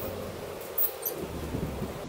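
Steel shovel digging into a pile of top-dressing soil and tipping it into a plastic wheelbarrow tray: gritty scraping and pouring, with a few sharp ticks a little under a second in.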